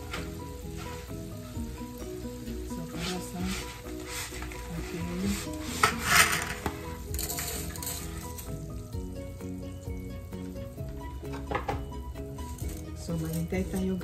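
Pot of water at a rolling boil, bubbling steadily, with a louder rush about six seconds in as dry spaghetti goes into the water.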